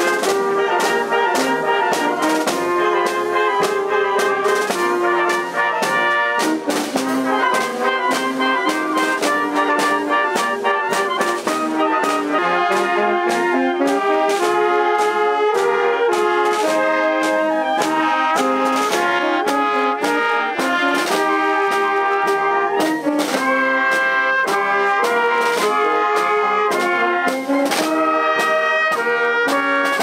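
A wind band plays processional music: trumpets and other brass with clarinets and saxophone carry the tune over a steady beat on snare drums and a bass drum.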